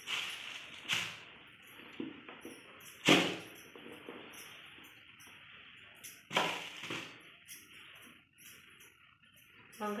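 Vegetables and fruit being handled and set down on a plastic-covered kitchen counter: a few sharp knocks and rustles, the loudest about three seconds in, with some low talk in between.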